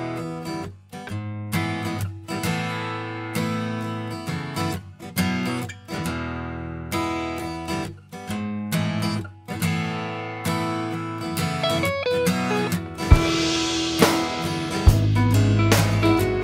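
Instrumental song intro: guitar strumming chords in a steady rhythm. Drums come in a few seconds before the end, and a low bass follows.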